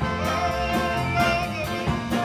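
Live blues band playing, with a trumpet solo holding and bending notes over a steady drum beat and band backing.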